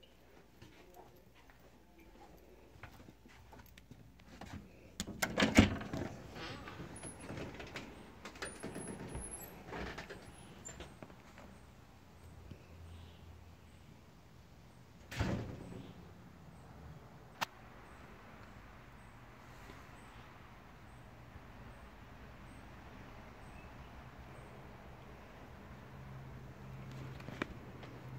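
Clunks, knocks and rustling close to a camera that has been set down face-first, with the loudest thuds about five and fifteen seconds in and a sharp click a couple of seconds later. A faint low hum runs beneath.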